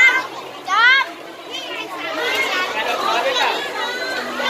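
Children's voices talking and calling out over one another, with two high, rising exclamations in the first second.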